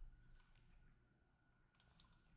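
Near silence: faint room tone with a thin steady high tone, and two or three faint clicks near the end.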